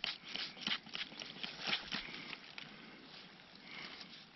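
Hand trigger-spray bottle squirting water onto a stone blade to wash it: a quick series of short spritzes over the first two seconds or so, then quieter.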